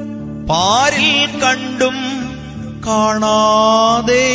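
Instrumental interlude of a Malayalam Christian devotional song played on keyboards: a lead melody slides up about half a second in, runs through a few ornamented notes, then holds one long note near the end, over a steady low drone.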